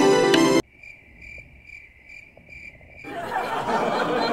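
Music cuts off abruptly under a second in. Crickets then chirp in a steady high-pitched pulse of about three chirps a second. About three seconds in, a louder noisy sound comes in over them.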